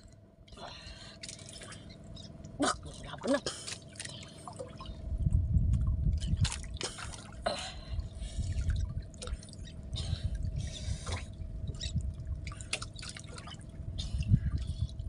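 Water dripping and splashing off a wet fishing handline as it is hauled in by hand, with scattered small clicks. A low rumble starts about five seconds in.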